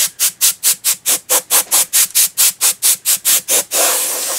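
Handheld dust blower squeezed over and over, puffing air in a quick, even rhythm of about four to five puffs a second, then one longer, steady hiss of air near the end.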